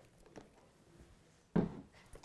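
Faint ticks of a screwdriver giving a screw a couple of quick turns through a Velcro strip into a saddle's gullet plate, then a short, louder handling noise about one and a half seconds in.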